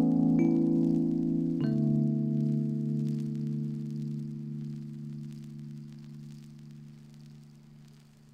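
Closing piano chords of an Italian pop ballad: a last chord struck about a second and a half in and left to ring, fading slowly away.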